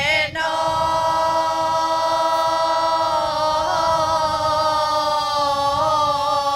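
Women's folk group singing an authentic Bulgarian folk song unaccompanied. The voices hold long, steady notes together after a short break just after the start.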